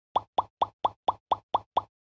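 Title-card sound effect: eight short, evenly spaced pitched blips, like bubble pops, about four a second.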